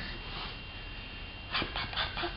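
A man making a quick run of 'pok pok pok' popping sounds with his pursed lips, starting about a second and a half in at several pops a second.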